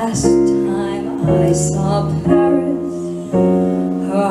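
Live small-band jazz ballad: piano chords over upright double bass, the held notes changing about once a second.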